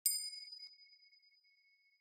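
A single bell ding, struck once at the start and ringing on in a few clear tones that fade away over about two seconds: the bell sound effect that goes with an animated notification-bell graphic.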